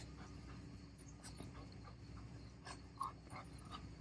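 Faint panting of a goldendoodle as it runs up to a person and jumps up on him, with a few soft short sounds scattered through it.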